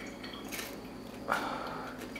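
Biting into a guacamole-topped chip and chewing it, with two short crunches about half a second and a second and a half in.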